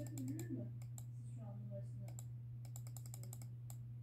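Rapid, irregular clicks of a computer pointer button, ticking checkboxes one after another in quick runs, over a steady low hum.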